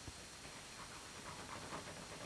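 Faint steady hiss of an old optical film soundtrack, with a soft click just after the start and no clear other sound.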